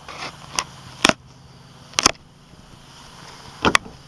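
A few sharp plastic-and-metal clicks, irregularly spaced with a double click near the end: the Pontiac Solstice's pop-up top latch pins on the rear deck being pushed down and snapping into their locked position.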